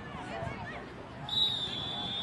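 A referee's whistle blown once, a steady shrill note lasting about a second, starting a little past halfway, over faint voices of spectators on the sideline.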